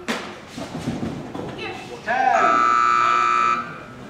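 A loud electronic buzzer sounds one steady, flat tone for about a second and a half, starting about two seconds in and cutting off abruptly. A sharp knock comes at the very start, and a brief voice just before the buzzer.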